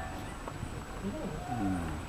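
A held violin note stops right at the start, followed by quiet, brief people's voices about a second in.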